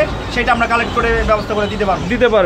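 A man speaking, over a low background rumble.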